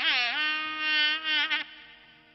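Nadaswaram playing a Carnatic melody: a reedy, buzzing tone that bends in pitch at first, then holds one long note and fades out in the last half second.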